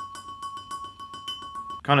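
A glazed ceramic plant pot tapped quickly and evenly as a hi-hat sound, about nine ticks a second, over a steady high ringing tone; the ticks stop just before the end.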